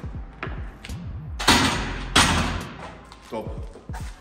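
Two loud sudden bursts of noise, about two-thirds of a second apart, during a heavy 80 kg barbell back squat, over background music.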